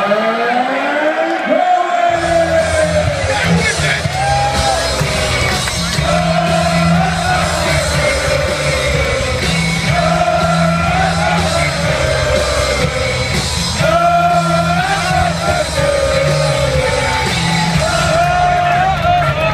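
A darts player's rock walk-on music with singing, played loud over an arena PA. A long drawn-out call from the ring announcer opens it, and the music's heavy beat kicks in about two seconds in.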